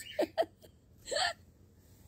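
A woman laughing briefly: two quick, hiccup-like bursts, then a breathier one about a second in.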